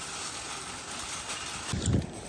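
Steady outdoor noise of a parking lot, with a low thump just before the end.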